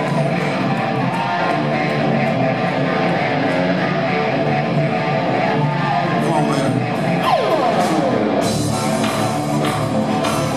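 Live rock band opening a song: a harmonica played into the vocal mic over electric guitar, with a falling pitch slide about seven seconds in. Drums and cymbals come in about eight and a half seconds in.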